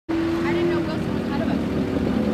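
A vehicle engine running steadily, its pitch dropping slightly a little under a second in, with faint voices of people talking behind it.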